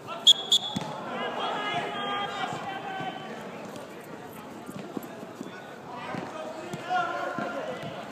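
Voices of futsal players calling out to each other during play, with two short, high-pitched whistle blasts just after the start.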